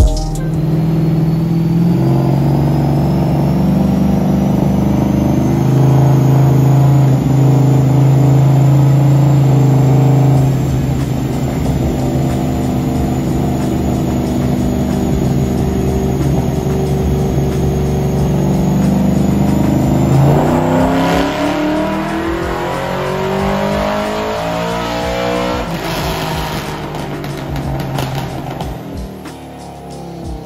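408-cubic-inch LS V8 in a Chevrolet Silverado pickup on a chassis dyno. It runs steadily under load, then revs climb steeply through the range in a full-throttle pull about two-thirds of the way in. It then lets off and winds down near the end.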